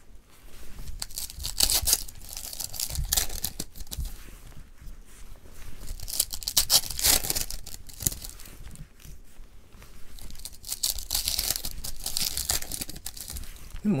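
Foil wrapper of a Marvel Bronze Age trading-card pack crinkling and being torn open, in irregular bursts of rustling.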